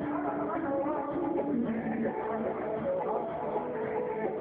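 A man singing long, held notes into a microphone over guitar accompaniment; the melody steps down in the middle and climbs higher near the end.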